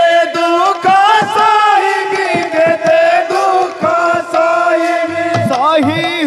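Kirtan devotional singing: a voice holding long, wavering notes, backed by clicking hand percussion, with deep barrel-drum strokes coming in near the end.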